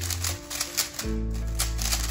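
Rapid plastic clicking of a 3x3 speed cube being turned quickly in the hands during a solve, over background music with steady low held notes.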